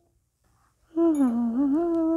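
A girl humming one held note that starts about halfway in, sags lower in pitch and then rises back up to hold steady.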